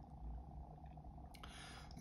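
Quiet room tone with a faint, steady low hum, and a soft hiss near the end.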